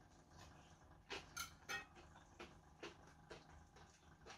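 Faint crunching as a bite of breadcrumb-coated chicken cutlet is chewed, about six short crunches of the crisp crust.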